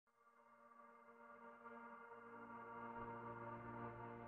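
Soft ambient soundtrack music fading in from silence: one held chord that swells steadily louder.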